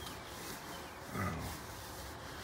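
Cloth rag rubbing and wiping over the grimy inner fender and front suspension parts of a truck, a soft steady scrubbing noise. A drawn-out spoken "wow" comes about a second in and is the loudest sound.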